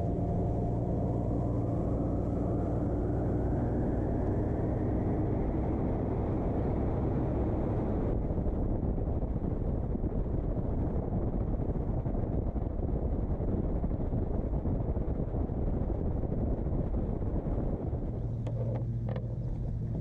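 Evinrude 200 outboard motor driving a center-console boat at speed across open water, its whine rising in pitch over the first few seconds as the boat picks up speed. The engine runs over a steady rush of wind and water along the hull, and the sound changes near the end.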